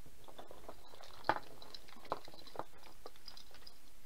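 Automotive wiring harness being handled on a wooden workbench: wires rustling and plastic connectors clicking, with a sharper click about a second in and a few lighter ones after.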